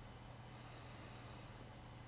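Near silence: room tone with a faint steady low hum and hiss.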